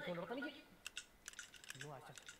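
A brief bit of a man's speech, then a quick, irregular run of light clicks: typing on a laptop keyboard.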